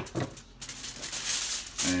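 Aluminium foil crinkling and rustling under hands moving pieces of raw snapper fillet on the foil sheet. There is a short crackle at the very start, then a longer rustle from about half a second in that lasts just over a second.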